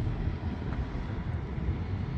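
Low, uneven rumble with no clear pitch.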